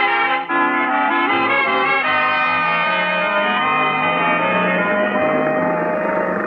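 Radio-drama music bridge marking a scene change: a quick run of notes, then a long held chord.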